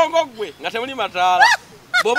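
Excited men's voices exclaiming and laughing at a high pitch, with a sharp rising squeal-like cry about one and a half seconds in.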